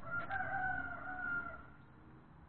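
One long drawn-out bird call lasting about a second and a half, held at a nearly steady pitch and dropping slightly as it fades.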